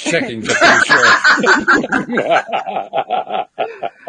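A person laughing loudly with some speech, the laughter breaking into quick, even pulses in the second half.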